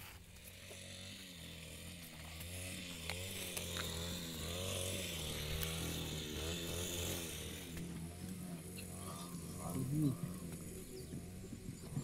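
A steady low motor hum, with faint indistinct voices over it in the middle.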